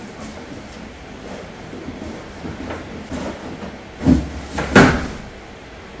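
An Icy Breeze cooler air conditioner being pulled out of its cardboard shipping box: scraping and rustling of cardboard and packing sheet, with two loud thumps about four and five seconds in as the heavy unit knocks against the box.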